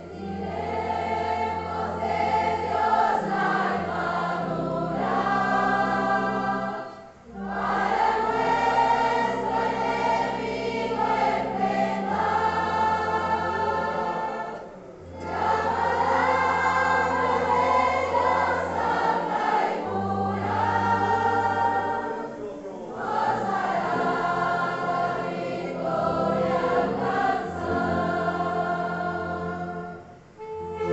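A congregation singing a hymn together, with instruments accompanying. It goes in phrases separated by brief pauses about every seven to eight seconds.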